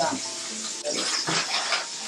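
Aluminium foil crinkling irregularly as it is peeled back off a roasting tray, over a steady hiss of oil sizzling in a frying pan.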